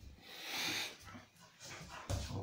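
A dog's breathy sounds and small vocal noises, the loudest a hissing burst about half a second in.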